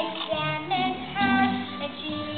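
Children singing a stage-musical song over musical accompaniment.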